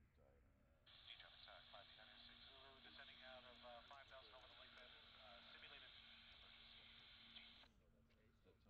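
A faint voice heard over a radio, thin and narrow-sounding, switching on sharply about a second in and cutting off just as sharply near the end. A steady low hum runs underneath.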